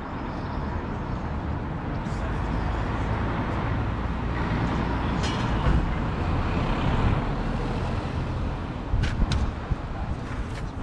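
Street traffic: a motor vehicle's engine and tyre noise swells through the middle and eases off as it passes, with a few sharp clicks near the end.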